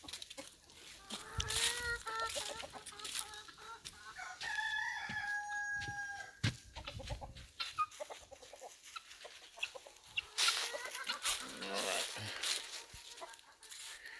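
A rooster crowing, the longest crow ending in a steady held note of about a second and a half near the middle, with chickens clucking around it. Footsteps crunch through dry fallen leaves.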